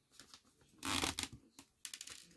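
Handling noise from a foam model-airplane wing as a servo is worked out of its channel in the foam: a short rustling scrape about a second in, then a few light clicks.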